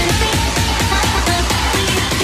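Electronic dance music with a steady, evenly spaced beat and heavy bass.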